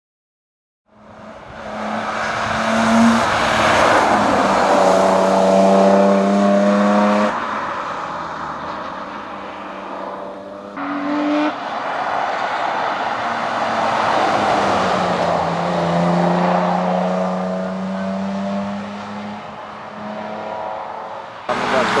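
Mercedes-Benz 190 (W201) hillclimb race car's engine revving hard under acceleration. The note falls away as it lifts off about seven seconds in, then after a short throttle blip near eleven seconds it pulls hard again through the next stretch.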